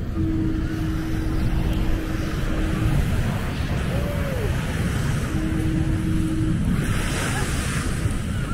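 Small surf washing onto the sand under wind rumbling on the microphone, with a brighter wash of hiss near the end. A steady humming tone sounds twice, with a short falling tone between.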